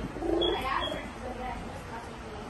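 A person's voice: a short murmured, voice-like sound about half a second in, then only faint room sound.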